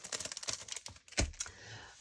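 Quick, light clicking and tapping of papers in a clear plastic bag being handled on a craft table, with one sharper tap just past a second in.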